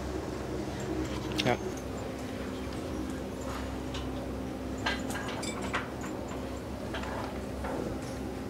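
Tie-stall cow barn ambience: a steady low hum with a few short clicks and knocks, such as tether chains and stall fittings, the loudest about one and a half seconds in.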